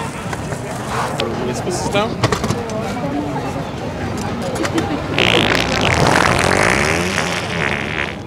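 A long, loud wet fart noise that starts about five seconds in and lasts a couple of seconds, heard over crowd chatter.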